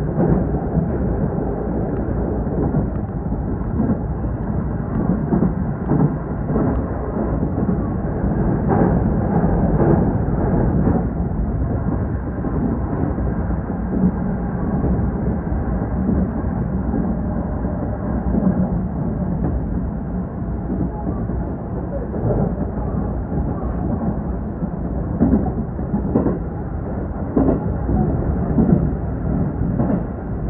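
Electric train running, heard from inside the front of the train: a loud, steady low rumble from the wheels and track, with scattered short knocks that stand out now and then, most around the middle and near the end.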